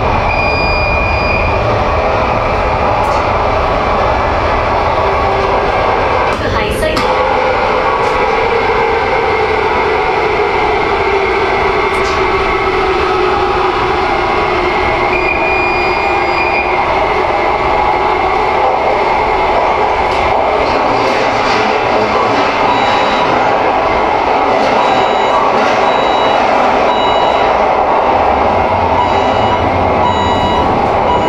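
Cabin noise of an MTR Kinki Sharyo–Kawasaki train running through a tunnel: a loud, steady rumble of wheels on rail and traction equipment. A motor whine slowly falls in pitch in the middle of the run, and there is a brief sharp sound about seven seconds in.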